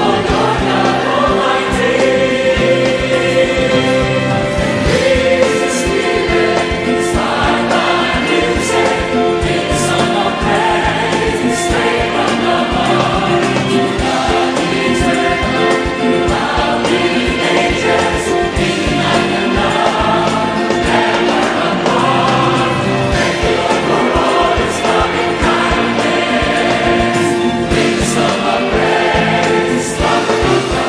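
A mass gospel choir of thousands of voices singing an English hymn of praise in full harmony, with the words "We are yours, O Lord God Almighty" and "to God eternal throughout the ages".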